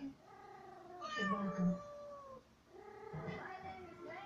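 A cat meowing in two long, drawn-out calls that slide in pitch, the first lasting about two seconds.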